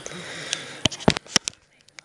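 Handling noise on a handheld camera's microphone: a breathy hiss, then a quick run of about six sharp clicks and taps, then a brief near-quiet gap near the end.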